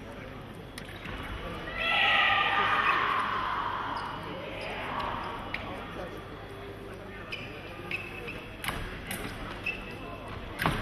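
Fencers' footwork on the piste: shoes thumping and stamping, with a few sharp knocks near the end. Voices shout loudly about two seconds in and fade over the next couple of seconds.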